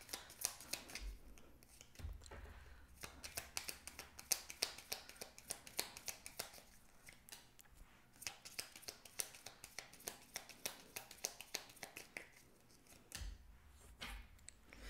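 A deck of tarot cards being shuffled by hand: a faint, quick run of irregular card clicks and snaps, broken by a few short pauses.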